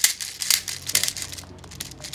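6 mm plastic BBs (0.20 g) clicking and rattling as a tube speed loader pushes them down into an MB08 airsoft sniper rifle magazine, with plastic-on-plastic clicks of the loader against the magazine lips. An irregular string of sharp clicks, several loud ones about half a second apart.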